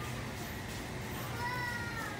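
Steady background noise of a crowded store, with a faint, high-pitched drawn-out tone sliding slightly downward near the end.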